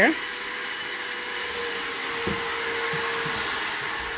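Steady whooshing hiss with a faint steady hum, like an electric fan or blower running. A few faint knocks come about two to three seconds in.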